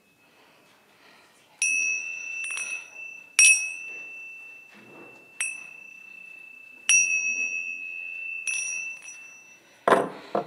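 A single-pitched chime struck about seven times at uneven intervals, each strike ringing on and fading. A short clatter of knocks comes at the very end.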